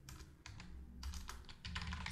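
Typing on a computer keyboard: a short run of quick keystrokes.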